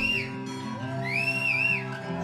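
Live rock band holding a sustained chord under two high, whistle-like notes that swoop up, hold and fall away, the second starting about a second in.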